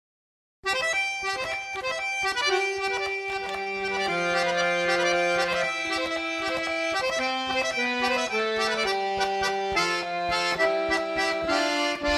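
Recorded music: an accordion plays the instrumental introduction of a Brazilian sertanejo song, the melody in long held notes over sustained chords. The music starts about half a second in, after a moment of silence.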